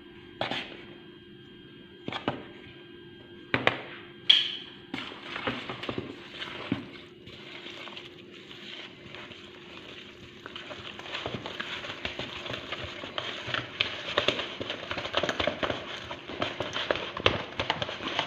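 A spoon taps against a plastic mixing bowl a few times as flour is added, then stirs and scrapes flour and liquid together into a soft dough. The stirring gets denser and louder after about ten seconds, over a faint steady hum.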